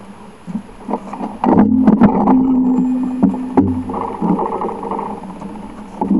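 A motor vehicle close by: an engine's steady hum rises about a second and a half in, with several sharp knocks and rattles over it.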